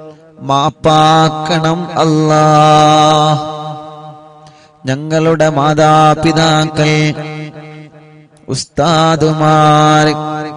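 A man chanting a supplication in a slow, drawn-out melodic voice, in long held phrases that each trail off before the next begins.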